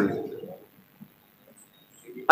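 The last word of a man's speech over a public-address microphone fades away, then near silence for the pause before he goes on.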